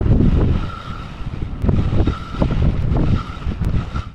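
Wind buffeting the microphone, a loud uneven low rumble that rises and falls, with a faint high tone coming and going behind it.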